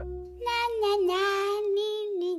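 A high, childlike voice singing a short wordless tune, holding wavering notes that step downward in pitch.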